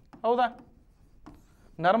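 Faint sound of a stylus writing on an interactive touchscreen whiteboard, with a man's lecturing voice briefly at the start and again near the end.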